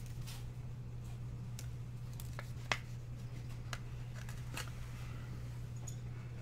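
Soft handling sounds of 1983 Donruss baseball cards and a plastic card holder: scattered light clicks and rustles, the sharpest a little under halfway through, as a card is slid into the holder. A steady low electrical hum sits underneath.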